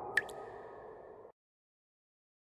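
Logo-reveal sound effect: the tail of a fading swish, then one short sharp ping about a fifth of a second in that rings on as a thin high tone. Everything cuts off abruptly a little past halfway.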